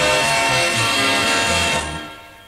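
Instrumental band music from a Thai pop song with no singing, fading away near the end as the song finishes.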